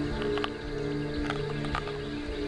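Background music of sustained low tones, with three short wet tearing sounds of teeth biting into a raw water snake.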